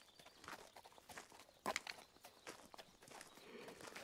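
Faint, irregular clip-clop of a walking horse's hooves, mixed with footsteps.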